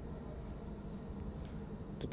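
A cricket chirping in the background: a high, evenly repeated chirp several times a second, over a low steady hum.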